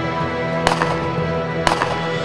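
Two shotgun shots about a second apart, each followed closely by a fainter crack, over steady background music.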